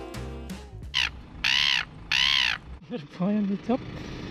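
A bird calling three times in quick succession, each call harsh and about half a second long.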